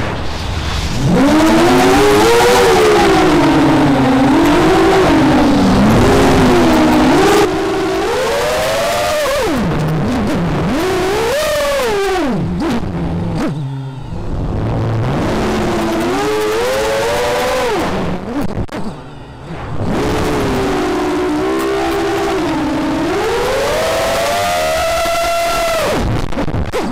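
Motors and propellers of a 6-inch FPV racing quadcopter whining. The pitch rises and falls smoothly with throttle, and drops out briefly twice, about 14 and 19 seconds in.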